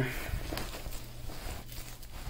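Armor plate being slid into the nylon pocket of a plate carrier, the fabric rustling and scraping softly, with a few faint clicks.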